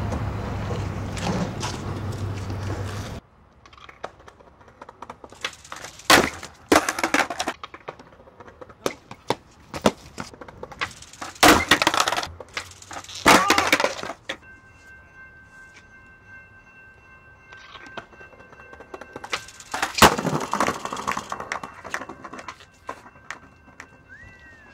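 Skateboard tricks on concrete: sharp pops and clacks of the board's tail and trucks striking the ledge and ground, landings, and hard wheels rolling, in several separate bursts. A steady rumbling noise fills the first three seconds, then cuts off.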